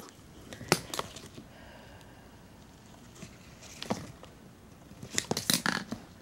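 Handling noise as a handheld camera is moved around: a sharp click about a second in, then a few faint scrapes, and a cluster of clicks and rubbing near the end.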